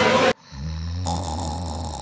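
A single long snore, low and rumbling, lasting about a second and a half. It follows an abrupt cut-off of crowded-room chatter.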